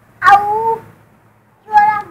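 A young child's voice giving two loud, high-pitched drawn-out calls, the first lasting about half a second and the second starting near the end.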